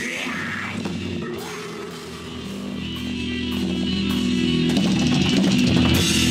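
Live rock band playing electric guitars and drums. The music thins out about two seconds in, then builds back louder with held guitar chords.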